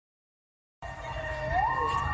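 Fire engine siren wailing, its pitch rising, cutting in abruptly a little under a second in after silence, over a low rumble.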